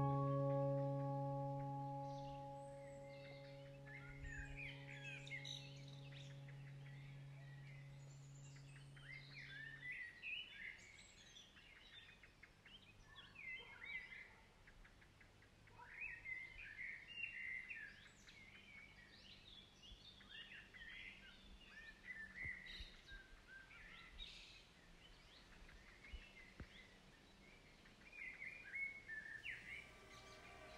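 Small birds chirping and twittering in short quick runs of calls, faint, over a low background hiss. A held piano-like chord fades out over the first ten seconds or so.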